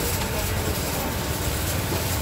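Steady rushing roar of a gas burner firing under a steamer stacked with bamboo trays of putu mayam, with steam escaping as the aluminium lid is lifted.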